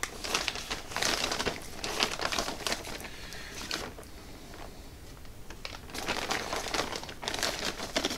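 Plastic Ziploc bag of breading crinkling as a hand works inside it, pulling out coated chicken strips. There are two spells of rustling, in the first three seconds and again near the end, with a quieter stretch in the middle.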